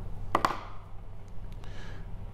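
A pause in speech: room tone with a steady low hum, and two quick taps about a third of a second in.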